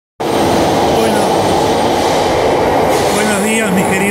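A Buenos Aires Subte Line E metro train pulling out of the station, a loud steady rumble of wheels on rails with a steady motor hum. A man starts talking near the end.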